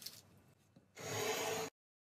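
Cupcakes being handled on a cake stand: a faint click, then about a second in a louder rubbing, scraping sound lasting under a second that cuts off abruptly.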